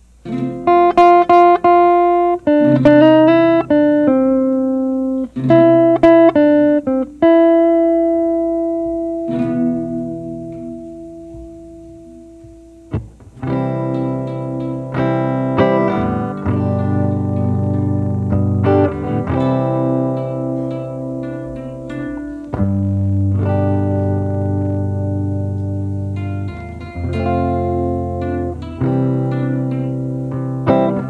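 An electric hollow-body guitar and an acoustic guitar playing together. For the first half, picked notes and chords ring out and fade, ending in one long held note that dies away. From about halfway, fuller chords with bass notes take over and keep going.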